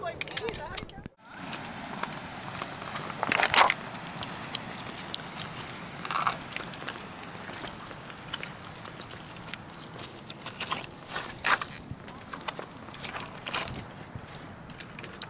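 Footsteps on a cobble beach: round beach stones knocking and clacking underfoot in an irregular string of sharp clicks, the loudest a little after three seconds in and again near eleven and a half seconds.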